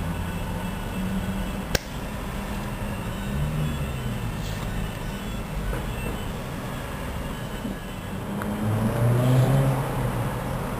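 Steady low rumble with a shifting low hum, swelling louder near the end, and a single sharp click about two seconds in.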